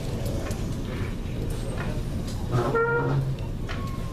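Trumpet sounding one short note, under a second long, about two and a half seconds in, then a brief higher note starting near the end, over steady room noise.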